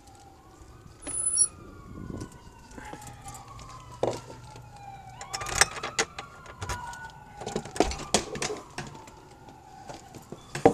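An emergency vehicle's siren wailing in the distance, slowly rising and falling throughout. Over it, from about four seconds in, come sharp clicks, knocks and rattles of a door and its lock being handled.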